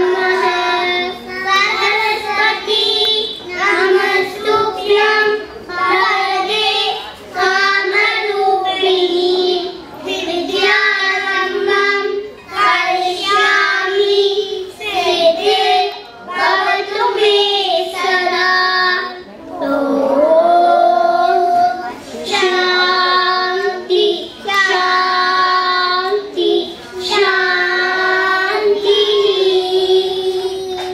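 A group of young children singing together, unaccompanied, in short phrases with brief breaks between them.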